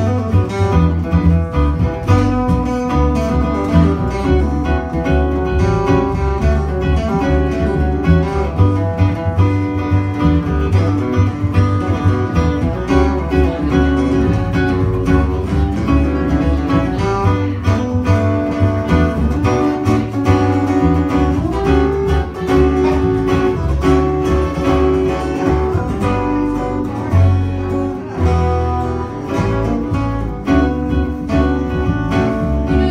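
Live instrumental break by a small country band: upright bass, acoustic guitar and archtop electric guitar playing together, with no singing.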